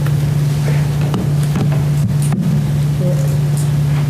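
A loud, steady low hum with faint murmuring and a few light clicks and knocks from the room.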